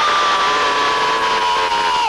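A loud, buzzing noise over a caller's phone line, holding one slightly sagging pitch for about three seconds and cutting off suddenly.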